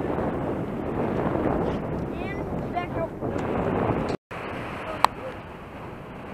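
Steady rush of surf and wind on the microphone, with faint voices in the background. The sound cuts out for a moment about four seconds in, and a single sharp click comes about a second later.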